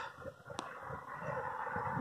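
Faint steady outdoor background noise, with one short sharp click about half a second in.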